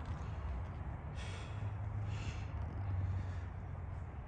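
A person breathing close to the microphone, two breaths about a second apart, over a steady low hum.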